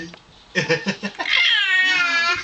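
Baby girl giving a long, high-pitched squeal of delight that starts about two-thirds of the way in and sags slightly in pitch, after a few short vocal sounds.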